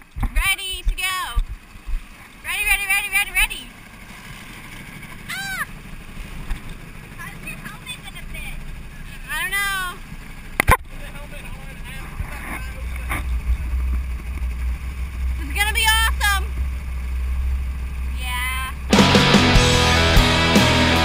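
Voices shouting and calling out among small go-kart engines, whose low steady rumble builds through the second half, with a single sharp click partway through. Loud rock music cuts in near the end.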